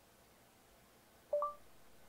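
A smartphone's Google app giving its short two-note rising beep about a second and a half in, a lower tone then a higher one, as voice search starts listening. The rest is near silence.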